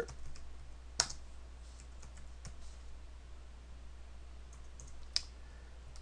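Computer keyboard typing: light, scattered keystrokes, with sharper single clicks about a second in and near the end.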